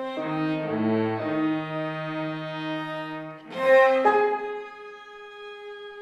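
Violin, cello and piano trio playing contemporary chamber music: several bowed notes held together, a loud accented attack about three and a half seconds in, then a single long held note, softer.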